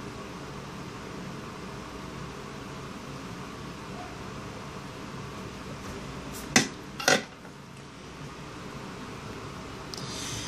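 A steady fan-like hum in the background. About two-thirds of the way through come two sharp knocks, half a second apart, of hard objects being handled on a workbench.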